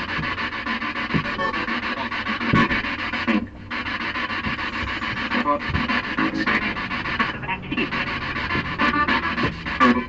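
Spirit box sweeping through radio stations: continuous choppy static with rapid stutters and brief snatches of broadcast sound, cutting out for a moment about three and a half seconds in.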